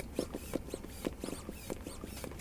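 Small hand pump inflating a rubber speed ball, worked in quick short strokes, each a faint squeak and click, several a second.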